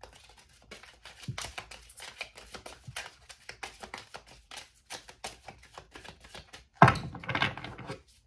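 Deck of tarot cards being shuffled by hand: a quick, irregular run of card clicks and snaps, with a louder flurry near the end.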